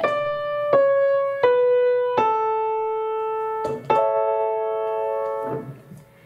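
Schultz upright piano playing the descending half of a five-tone scale on A: four single notes stepping down, about one every three-quarters of a second. A three-note chord follows a little after the halfway point and is held until it fades away near the end.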